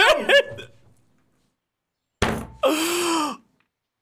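A man's excited yelling tails off, then after a silent gap comes a sharp thump, followed by a strained shout that rises and falls in pitch.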